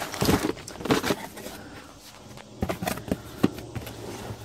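Cardboard boxes being handled and shifted in an opened shipping case: rustling and scraping with a few sharp knocks, mostly in the first second and again near the end, over a faint low steady hum.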